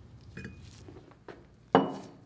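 Light metal-on-metal clinks from a seat wrench working the removable seat into a cast valve body, then one sharp metallic clank with a brief ring near the end.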